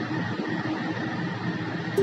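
A lull in soft background guitar music: a steady hiss with one held note fading away, and the music picking up again at the very end.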